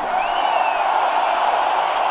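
Large stadium crowd cheering, a dense roar of many voices, with one high call sliding up and then down in the first second.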